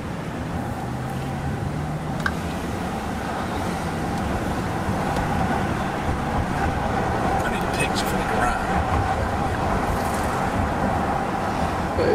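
Low-speed city traffic heard from a car following a Ferrari: steady engine and road noise, a little louder from about four seconds in, with no sharp revs.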